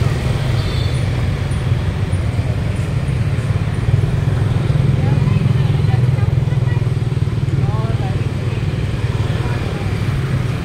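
Street ambience: a steady low rumble of motorbike and other road traffic, with indistinct chatter of people nearby.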